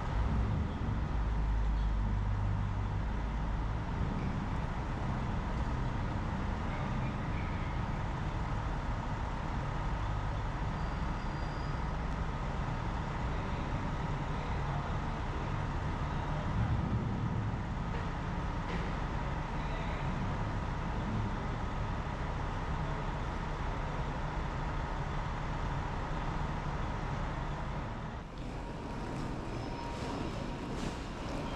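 Curbside traffic ambience dominated by an idling coach bus: a steady low engine rumble, loudest for the first few seconds, with a faint steady whine above it. The level drops slightly near the end.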